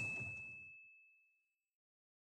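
A single high bell-like ding, a subscribe-button notification sound effect, holding one steady note and dying away before the end. Under it, the vehicle noise fades out within the first second.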